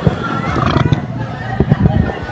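A woman making wordless vocal sounds in a run of short bursts.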